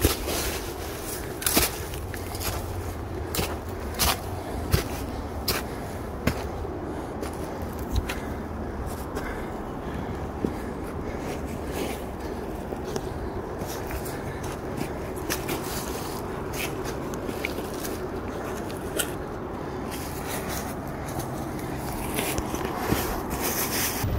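Footsteps crunching and scuffing on a dry, pine-needle-covered dirt trail, with irregular sharp crackles that thin out in the second half, over a steady low rumble.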